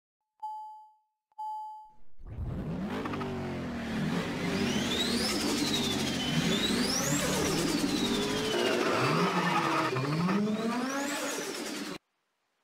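Two short electronic beeps. Then, from about two seconds in, a car engine revving hard, its pitch climbing and dropping again and again as in racing.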